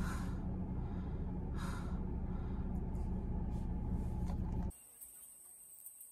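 A car's engine running with a steady low hum, heard inside the cabin, with two short breathy gasps from a woman early on. About three-quarters through, the sound cuts off abruptly to near silence.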